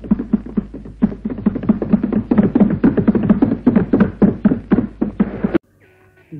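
A rapid, irregular run of percussive thumps, several a second, in old, worn recorded sound. It cuts off abruptly about five and a half seconds in.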